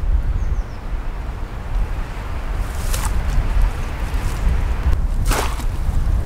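Steady low rumble of wind on the microphone, with a faint click about halfway and a short burst of noise about five seconds in.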